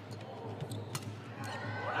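A badminton racket striking the shuttlecock with one sharp crack about a second in, with a few fainter clicks around it over a low, steady arena hum.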